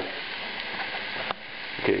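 Thin peppercorn-crusted beef steak sizzling steadily in hot oil in a frying pan as its first side sears and browns, with a brief click about one and a half seconds in.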